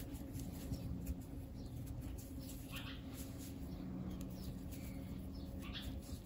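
Faint scratching and rustling of cotton string (barbante) as a crochet hook pulls loops through the stitches, with a few brief squeaky scrapes, over a low steady hum.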